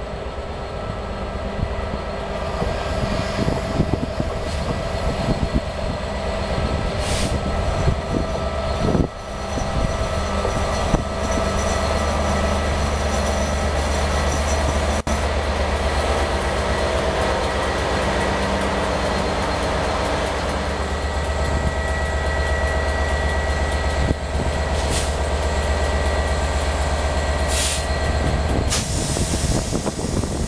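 EWS Class 67 diesel-electric locomotive, with its two-stroke V12 engine, running past close by with a train of coaches: a deep, steady engine hum over the noise of wheels on rail, loudest around the middle, with a few sharp knocks from the wheels.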